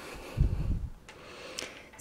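Handling noise from a handheld camera: a low, dull bump about half a second in, then two faint clicks.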